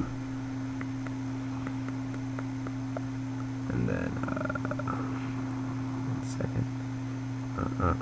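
Steady low electrical hum picked up by the recording microphone, with a few faint clicks. A brief pitched voice-like sound comes about four seconds in.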